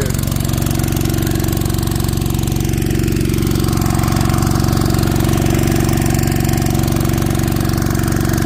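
Small gasoline engine driving a gold dredge's water pump, running steadily at a constant speed.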